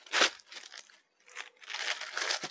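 Crinkling and rustling as silk sarees are handled and unfolded, with a sharp crackle just after the start and a longer rustle in the second half.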